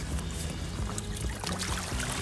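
River water sloshing and trickling as a man moves through it beside an inflatable kayak, an even low-level splashing with no sharp impacts.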